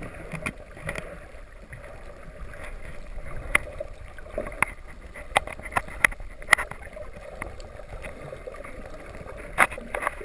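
Underwater ambience picked up by a camera below the surface: a steady water hiss with scattered sharp clicks, the loudest about three and a half, six and a half and nine and a half seconds in.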